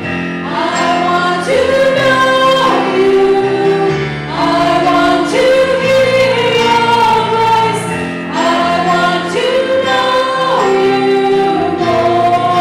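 Three women singing a church song together in harmony over instrumental accompaniment, in sung phrases about four seconds long.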